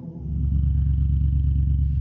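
Koenigsegg Regera's twin-turbo V8 engine running with a deep, steady note, coming in suddenly just after the start.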